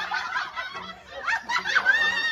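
Several people laughing together, the laughter getting louder in the second half.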